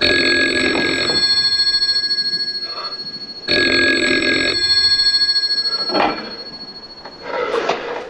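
Old telephone's mechanical bell ringing twice, each ring about two and a half seconds of fast rattling, the second starting about three and a half seconds in. A few knocks and a short rustle follow near the end.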